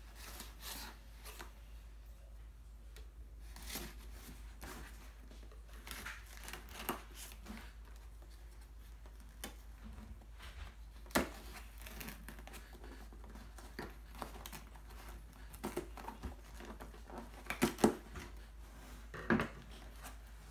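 Kitchen knife slitting packing tape along a cardboard box, heard as faint, intermittent scraping, tearing and rustling. Near the end the cardboard flaps are pulled open, with a few sharper knocks and crinkles.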